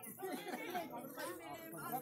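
Crowd chatter: many people's voices talking over one another at once.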